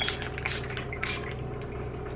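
Fine-mist pump spray bottle of mattifying face mist being sprayed onto the face to set makeup: a few short hissing sprays about half a second apart.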